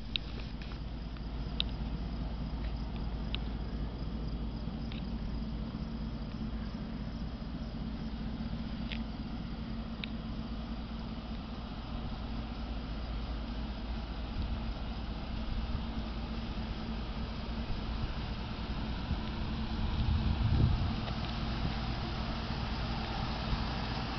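Ford F-150 pickup engine idling, a steady low rumble. A few faint high ticks come in the first ten seconds, and the rumble swells briefly about twenty seconds in.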